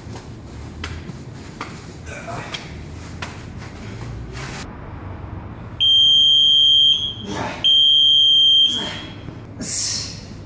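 Electronic boxing round timer sounding two long, high buzzes, each about a second, marking the change of a circuit-training interval. Before them come scattered light knocks.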